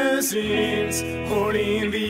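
Grunge-style rock music, a passage with no sung words. A low sustained note enters about half a second in and drops out just before the end.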